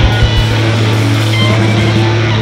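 Live rock band playing loudly, electric guitars ringing over a held low bass note, with a few drum hits.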